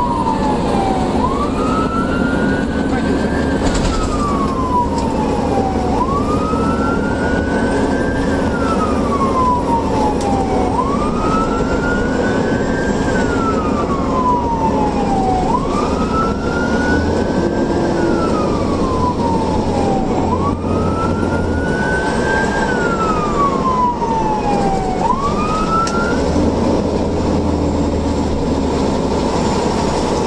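Fire engine's siren wailing in a slow, repeating rise and fall, about once every five seconds, over the steady drone of the truck's engine heard inside the cab. The siren stops a few seconds before the end while the engine runs on.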